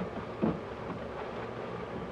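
Faint rustling of a plastic zip-top bag being handled and opened, over a low steady background rumble.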